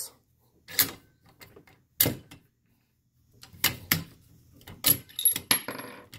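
Bolt of a Savage bolt-action rifle being worked: a run of sharp metal clicks and clacks as a spent brass case is loaded, the bolt is closed and locked, then opened. Near the end the upgraded Tactical Works extractor pulls the case out, and the brass clinks onto the table, a sign that the new extractor now grips the case.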